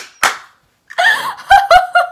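Two quick hand claps at the start, then after a short pause a woman laughing in short pulses.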